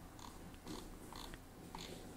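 Faint clicks of a computer mouse's scroll wheel, a series of short ticks about every half second, as the wheel is turned notch by notch to zoom in.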